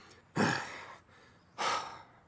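A man's two heavy, exasperated breaths about a second apart, the sighs of an angry cartoon character trying to calm himself.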